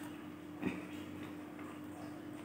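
Close-miked chewing of mandarin orange, with one sharp click about half a second in, over a steady low hum.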